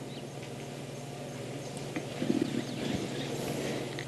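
Young elephants moving through dry bush close by: faint rustles, small snaps and soft footfalls, with a short low sound about halfway through, over a low steady hum.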